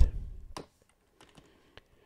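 Keystrokes on a computer keyboard: a few quick key presses in the first half second, then a few fainter single key clicks.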